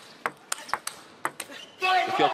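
Celluloid-type table tennis ball clicking back and forth between bats and table in a fast rally, several sharp hits a few tenths of a second apart. A loud shout comes near the end as the point is won.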